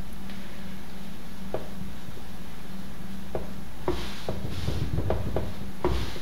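Hands smoothing and tucking terry-cloth towels stacked on a wooden board: soft rubbing with a few light taps, more of them in the second half, over a steady low hum.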